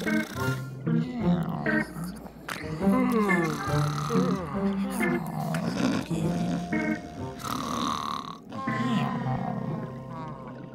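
Several cartoon voices snoring, with drawn-out, wavering snores over background music.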